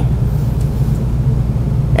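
A steady low hum with a faint hiss over it, unbroken through the pause.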